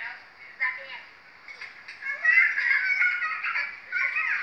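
A young child's high-pitched voice, quiet for the first couple of seconds and then loud through the second half, with a thin, cut-off sound typical of an old home-video tape recording.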